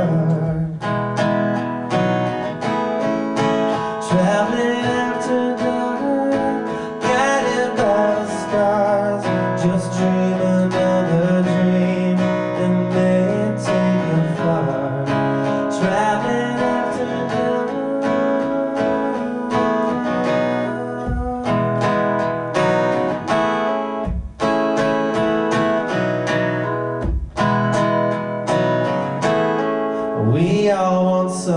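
Steel-string acoustic guitar strummed steadily through an instrumental passage of a song played live, with a few brief breaks between chords in the last third.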